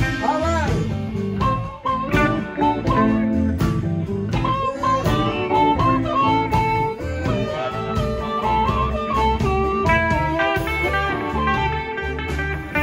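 Live electric blues band playing: electric guitars, bass and drums, with an amplified harmonica played through a hand-held microphone over the top.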